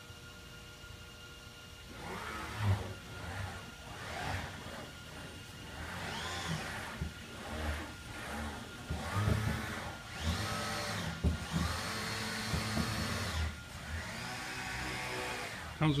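Mitsubishi RV-12SL six-axis industrial robot cycling through its moves at 70% speed: its axis motors whine, rising and then falling in pitch with each move, one arc after another, a second or two each.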